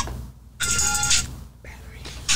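Short snippet of an old recorded rap song played from a phone's speaker, with a vocal line audible, starting about half a second in and cut off abruptly after about half a second, as the recording is skipped through.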